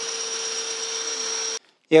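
DeWalt 20V cordless drill running at a steady speed, its 5/16-inch bit drilling into a steel tractor grill guard, then stopping abruptly after about a second and a half.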